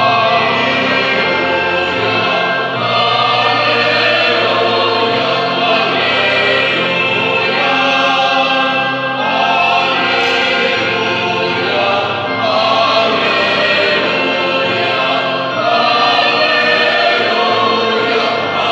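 Mixed choir of men and women singing a sacred hymn with organ accompaniment, the voices rising and falling in phrases about every three seconds over sustained low organ notes.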